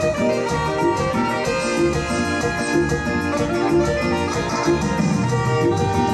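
A live dance band playing an instrumental stretch of a song with a steady beat, with no singing.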